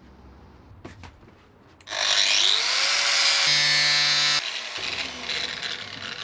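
Angle grinder cutting the lip off a clear plastic storage container. It starts about two seconds in with a rising whine and loud cutting noise, runs with a steady whine, and stops abruptly about four and a half seconds in, followed by quieter noise.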